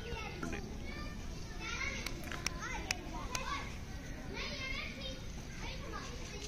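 Children's voices and calls in the background, with a few sharp clicks in the middle.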